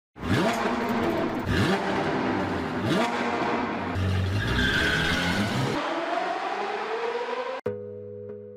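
Sports-car engine sound effect: the engine revs up three times, then tyres squeal around the middle, and a long rising whoosh follows. It cuts off abruptly shortly before the end, and soft music notes begin.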